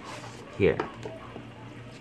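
Cardboard smartphone box being opened by hand: faint rubbing and sliding of the paperboard lid against the box.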